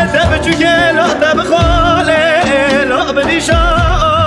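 Kurdish govend/halay folk dance music: a high, ornamented melody with wide vibrato carried over a full band, with deep drum hits every second or two.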